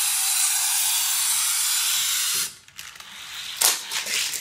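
A die-cast toy car's wheels rolling fast along plastic Hot Wheels track make a steady rushing sound that stops abruptly about two and a half seconds in. A short plastic click follows near the end.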